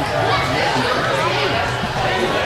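Many people talking over one another in a steady, unbroken chatter, carrying in a large indoor sports hall.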